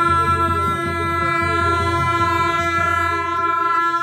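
Tibetan monastic wind instruments sounding a long, loud, steady chord: a low drone under several high held tones. This is ritual horn music for the Future Buddha (Gyalwa Jampa) procession.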